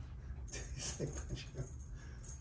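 A domestic cat making a few faint, short mews.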